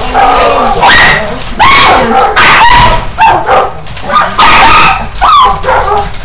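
A dog barking and yelping repeatedly, loud short barks about a second apart.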